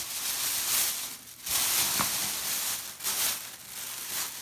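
A thin plastic shopping bag full of kitchen scraps crinkling and rustling in several bursts as hands pull it open and dig into it, with one sharp snap about halfway through.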